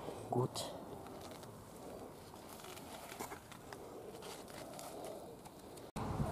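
Faint garden ambience with a bird calling in the background.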